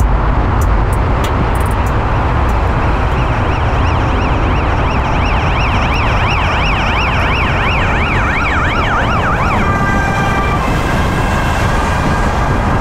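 Car engine and road noise rumbling in a road tunnel, with a siren rising and falling rapidly over it from a few seconds in. The siren stops about three-quarters of the way through, giving way to several steady tones.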